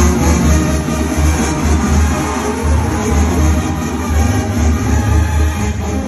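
Loud music through an arena sound system, cutting in suddenly with a heavy, pulsing bass.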